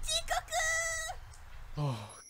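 A girl's high-pitched cartoon voice crying out in Japanese, a few short syllables and then one long held cry. A man's voice starts speaking near the end.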